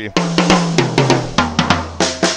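Gretsch Catalina Maple drum kit with seven-ply maple shells being played: a quick run of strokes around the toms, stepping down in pitch from the high toms to the 16-inch floor tom, which rings low from about one and a half seconds in.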